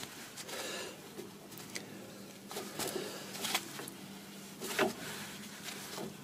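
Faint, scattered metallic clicks and scrapes of a three-legged hub puller as its centre screw is turned to put tension on a Triumph TR4 rear hub.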